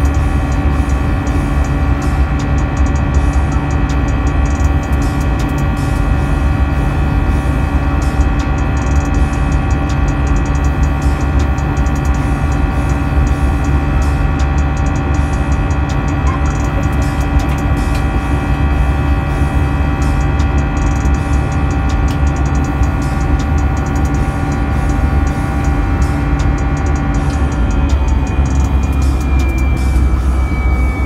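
Airbus A319 jet engine heard inside the cabin from a window seat during the climb: a loud, steady rumble with several whining fan tones held level. Near the end some tones dip slightly as the engine's power changes.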